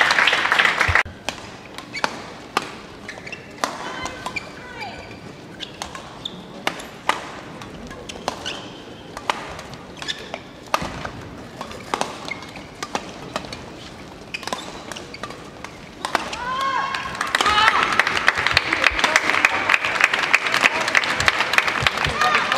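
Badminton rally: sharp racket strikes on a shuttlecock, spaced irregularly about a second apart, with the short squeak of shoes on the court floor. About a second in, a loud burst of crowd noise dies away, and from about 17 seconds in the crowd cheers and applauds loudly as the rally ends.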